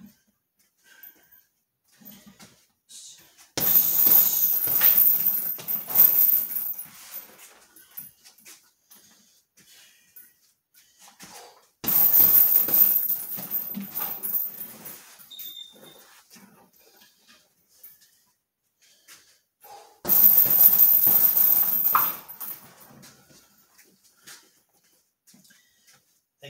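A heavy bag struck in three separate flurries of punches and knees, each lasting a couple of seconds, with quiet gaps of several seconds between them.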